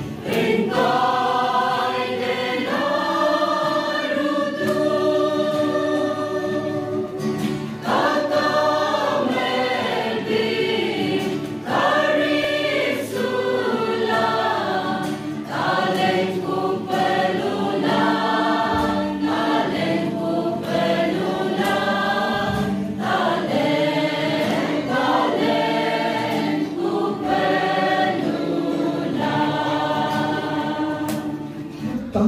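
Mixed choir of men and women singing a hymn in several parts, with long held notes, accompanied by an acoustic guitar.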